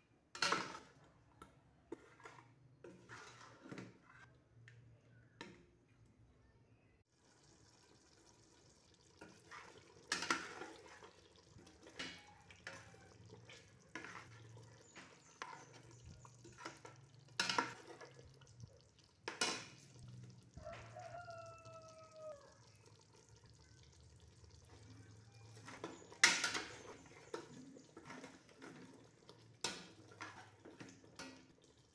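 Kitchen work: pots, dishes and utensils knocking and clinking now and then, with a tap running in a steady hiss from about a quarter of the way in. A short squeaky tone sounds once, a little past two-thirds of the way through.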